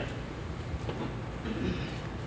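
Hushed room tone in a hall with a seated audience: a low steady rumble, with a few faint small sounds of movement.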